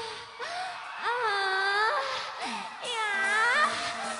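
A voice letting out two long, drawn-out wails about a second each, the pitch dipping and then rising in each.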